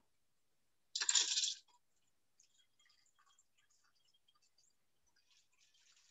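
A short clink and rattle of ice in a cocktail shaker about a second in, as the shaken drink is poured into a glass, followed by a few faint clinks.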